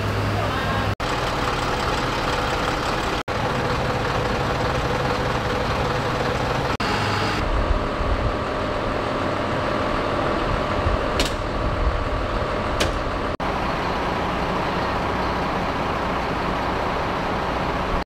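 Fire engines' engines running steadily at a fire scene, with voices in the background. The sound breaks off briefly several times, and two short clicks come about a second and a half apart in the second half.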